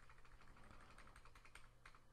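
Faint computer keyboard key presses: a quick run of light taps, as Ctrl and plus are pressed repeatedly to grow a selection, over a low steady hum.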